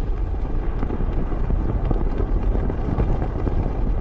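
A steady, deep rumbling wind-like noise, a sound effect for a storm of falling iron rain on a scorching gas giant.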